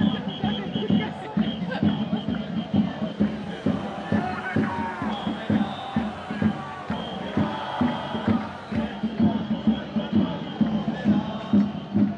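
A marching protest crowd chanting and shouting over music with a steady beat of about three pulses a second.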